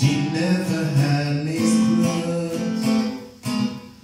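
Acoustic guitar strummed in a steady rhythm, chords changing every second or so, with a short dip in level near the end as the strumming pauses.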